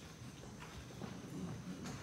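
Footsteps: hard-soled shoes clicking on a stage as people walk across it, a few uneven steps with the loudest near the end, over low hall murmur.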